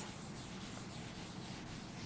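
Faint, steady rustling noise over low room hiss.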